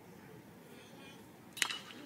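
Crack of a metal college baseball bat hitting a pitched ball, one sharp hit about a second and a half in, over faint stadium crowd noise.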